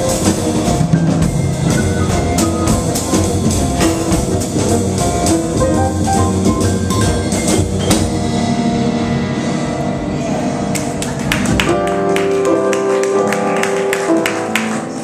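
Live jazz piano trio playing: grand piano, upright double bass and drum kit together. About twelve seconds in, the drums and low bass drop away and the piano carries on more on its own.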